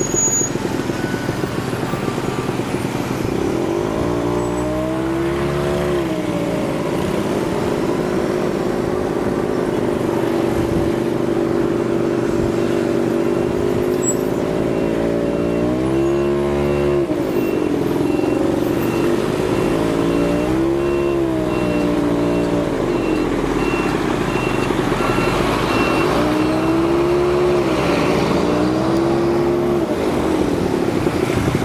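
A motor vehicle's engine running loudly and steadily, its pitch rising and falling several times as it speeds up and slows down. A faint, evenly repeating high beep sounds through the middle stretch.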